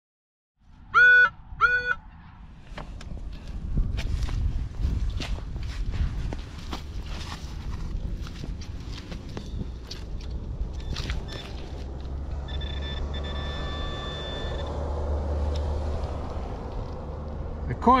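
A Minelab CTX 3030 metal detector gives two short, loud beeps as it hits a target. Then comes digging in wet clay soil: a spade cutting and crunching, with wind on the microphone. Near the end a handheld pinpointer buzzes steadily for about two seconds as it homes in on the coin.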